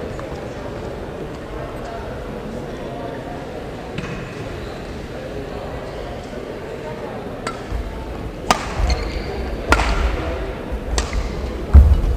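Badminton rally: sharp clicks of rackets striking the shuttlecock, a single one early on and then four more about a second apart in the second half. Players' footsteps thud on the court floor through the rally, with a loud thump just before the end.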